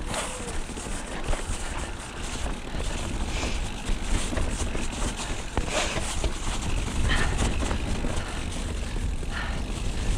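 Mountain bike riding fast down a dirt forest trail, heard from a camera on the bike: a steady wind rumble on the microphone, tyre noise on the dirt, and the bike's rattles and knocks over the bumps.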